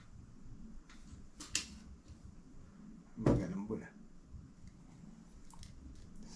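A few light clicks and taps of objects being handled, with a brief wordless vocal sound from a man about three seconds in.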